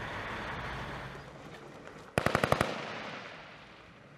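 Military vehicles, Humvees, driving by with a steady engine hum for the first second or so, then about two seconds in a short burst of rapid automatic gunfire, about eight shots in half a second.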